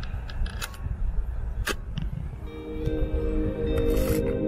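Shutter of a Hasselblad 500C/M fired by cable release, a sharp click about one and a half seconds in, over a low rumble of wind on the microphone and a few smaller clicks. Soft ambient music fades in a little past halfway.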